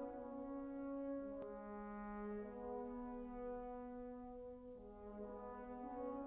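French horn playing a slow solo of long held notes, the pitch stepping to a new note every second or two.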